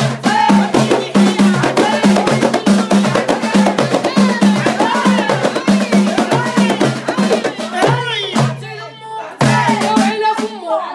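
A group of women singing Moroccan houariyat folk song together over a steady, quick beat of hand-struck frame drums. The drumming and singing drop away for a moment shortly before the end, then start again.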